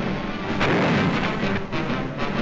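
Music soundtrack with loud gunfire laid over it, heaviest about half a second in.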